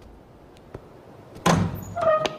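A heavy wooden door bangs shut about one and a half seconds in: a single loud thud with a short ringing tail.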